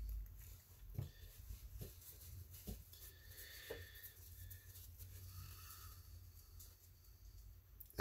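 Quiet room tone with a few faint clicks and a soft tap as a plastic spray bottle is handled and set down.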